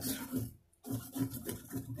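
A man's voice talking or mumbling, not picked up as words, with a short pause about half a second in. Under it, the scratchy rubbing of a rag working mineral oil into a guitar fretboard.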